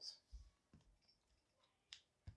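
Near silence with a few faint soft knocks in the first second and one short sharp click near the end, from hands handling a trading card.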